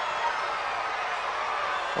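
Steady crowd noise from a wrestling arena audience, an even wash of many distant voices with no single sound standing out.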